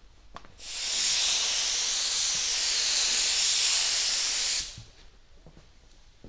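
A budget Napa gravity-feed paint spray gun spraying silver lacquer base coat: a steady hiss of compressed air and atomised paint in one pass of about four seconds, which cuts off sharply when the trigger is released.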